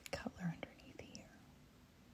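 Soft whispered muttering with a few small clicks in the first second or so, then faint room tone.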